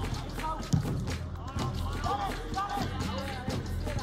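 Footballers shouting to each other across a football pitch, with a ball struck once just under a second in, over a steady low hum.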